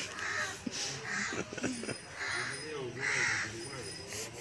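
A bird calling four times, about a second apart, over a low, wavering voice.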